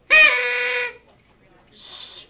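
A paper party blower blown once in a single squawky, reedy blast lasting under a second, its pitch jumping up at the start and then holding steady. A short breathy hiss follows near the end.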